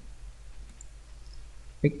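A few faint computer mouse clicks over a low, steady background hum.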